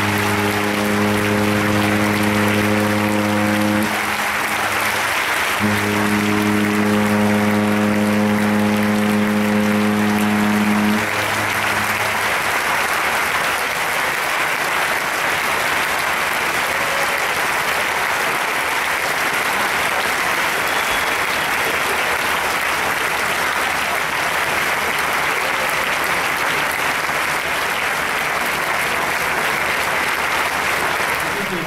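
A cruise ship's horn sounds two long, low, steady blasts, the first ending about four seconds in and the second running from about five and a half to eleven seconds, over continuous crowd applause.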